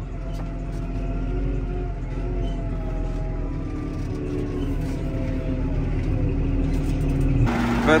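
A tractor's diesel engine running under load while towing a stuck tractor, heard from inside the cab as a steady low rumble whose pitch drifts slowly.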